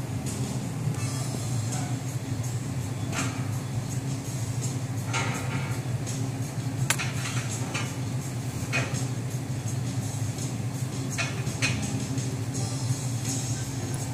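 Scattered light clicks and taps as a copper-wire sculpture is handled and adjusted on a paper-covered table, over a steady low hum.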